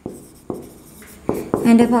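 Stylus tapping and writing on the glass of an interactive display board: a few sharp taps about half a second to a second apart, with a faint scratch of the pen between them.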